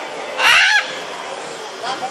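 Blue-and-yellow macaw giving one short, loud call about half a second in.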